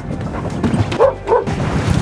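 Golden retriever barking twice in quick succession about a second in, with a splash of water starting right at the end.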